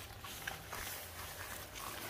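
Faint background noise with a low hum and no distinct sound event; a soft tick about half a second in.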